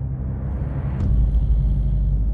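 Trailer sound design over a low drone: a rising whoosh swells into a sharp hit about a second in, followed by a deep low boom that holds.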